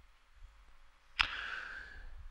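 About a second in, a sharp mouth click, then a short breath drawn in, picked up close on a headset microphone.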